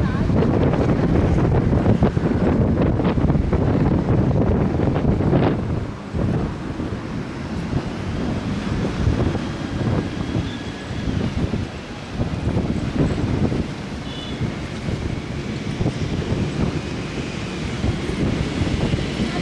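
Wind buffeting the microphone over the wash of waves on the shore during a thunderstorm, heaviest for the first six seconds and then easing a little.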